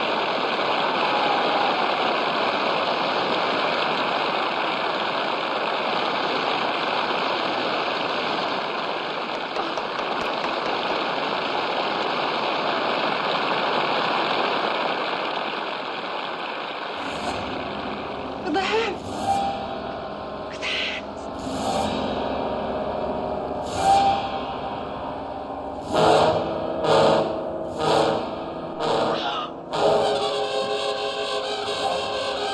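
Concert audience applauding steadily; about seventeen seconds in the applause gives way to a quieter background with a series of short vocal outbursts, coming about once a second near the end.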